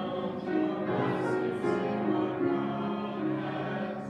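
A hymn in a church: organ chords held and changing under voices singing together.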